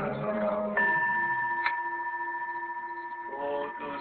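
A bell struck once in a pause of the chanting, its tone ringing on and slowly fading with a gentle waver, with one short click about a second after the strike. A chanting voice trails off as the bell sounds, and a voice comes back in near the end.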